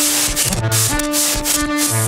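Modular synthesizer music: a held synth note that drops to a lower bass note and back again, under repeated short bursts of hissing noise.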